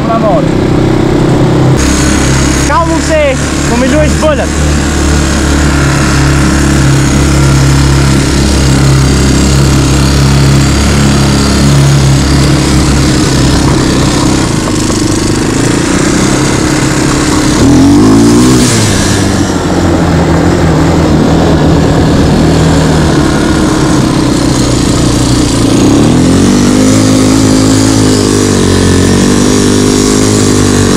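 Quad bike (ATV) engine running under way, its revs rising and falling about two-thirds of the way through and again near the end.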